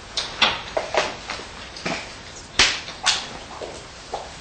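Handling noise at a lectern: a string of sharp clicks, knocks and rustles as cables, a clip-on microphone and a laptop are handled, picked up close on the microphone. The two loudest knocks come close together a little past halfway.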